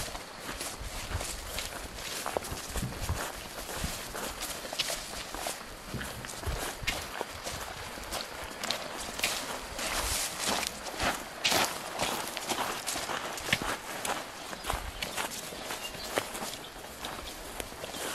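Footsteps pushing through dense undergrowth: leaves and branches brushing steadily, with irregular sharp crackles of twigs and stems.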